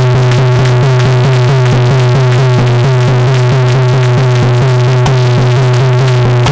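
Instrumental bhajan interlude with no singing: a fast, even run of short repeated notes, about five a second, over a steady low drone.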